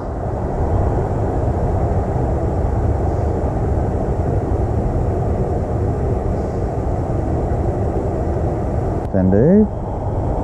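Wind buffeting the microphone: a steady low rumbling noise. A brief voiced exclamation comes near the end.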